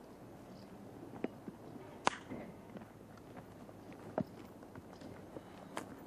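A horse's hooves stepping: a few scattered, irregular knocks, the sharpest about two seconds in, over a steady low background noise.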